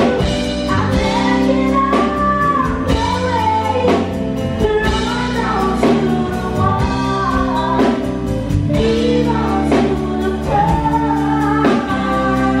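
Live band performance: a woman and a man singing a gliding vocal melody, backed by keyboard, electric guitar, bass guitar and a drum kit striking about once a second.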